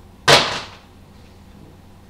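A plastic Blu-ray case being handled: a single sharp plastic scrape and clack about a quarter second in that dies away within half a second.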